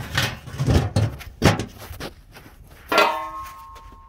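Galvanized metal ash bucket and its lid clanking as they are handled: a few knocks, then a louder metallic clank about three seconds in that keeps ringing for about a second.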